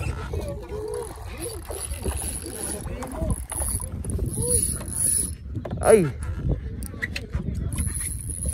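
Spinning reel being cranked to wind in line on a hooked kingfish, its gears turning with an intermittent thin high whine, over a steady low rumble. Short voice-like calls come and go, with a falling cry about six seconds in.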